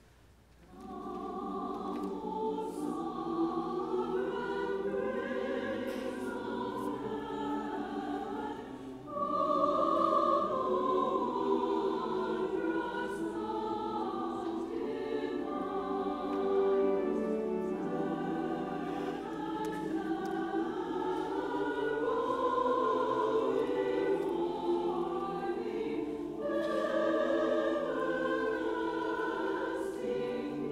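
A large church choir singing a choral piece. It comes in about a second in, after a brief hush, and swells louder about nine seconds in.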